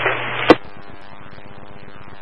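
Scanner radio between transmissions: a short rush of squelch noise that cuts off with a sharp click about half a second in as the last transmission drops, then a steady low radio hiss and hum.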